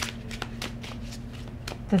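A tarot deck being shuffled by hand: a quick, irregular run of soft clicks.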